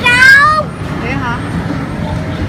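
A short, loud, high-pitched wavering cry, most likely a child's squeal, at the very start, then a smaller falling call a second later, over a steady murmur of crowd chatter.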